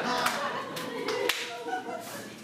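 A few sharp hand claps in a small room, with voices underneath.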